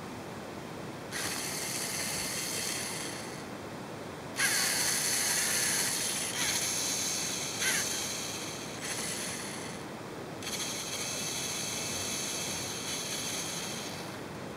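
LEGO Mindstorms NXT servo motors whirring through their plastic gear trains in about six bursts of one to three seconds with short pauses between them, driving the monster truck's wheels while it lies on its back.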